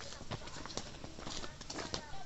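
Footsteps of people walking on a dirt path: a quiet, irregular run of short steps.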